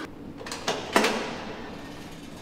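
Two sharp knocks on a door, about a third of a second apart.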